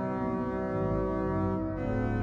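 Pipe organ, a Hauptwerk sample set of the Domkerk Utrecht organ, holding full sustained chords over a deep bass; the chord changes near the end.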